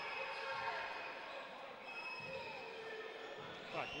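Basketball game ambience in a sports hall: faint, distant voices of players and spectators, echoing in the gym.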